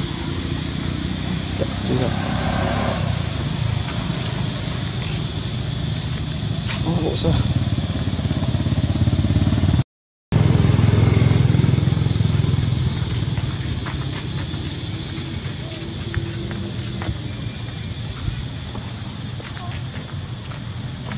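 Steady outdoor background noise with a heavy low rumble, and indistinct voices in it. The sound drops out for a moment about ten seconds in.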